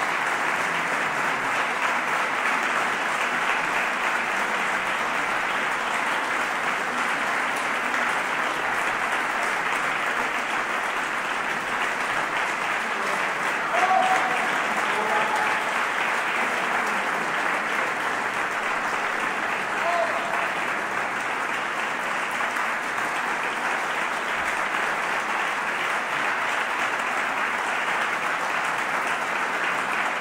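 Concert-hall audience applauding steadily after a performance, with a slight swell and a few short calls from the crowd about halfway through.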